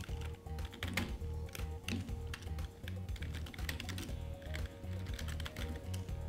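Computer keyboard typing: quick, irregular keystroke clicks, over background music with a steady low beat.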